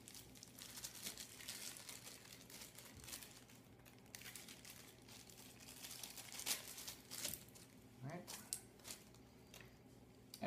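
Faint crinkling and rustling of a plastic parts bag being handled, with scattered sharp crackles, two louder ones a little past the middle.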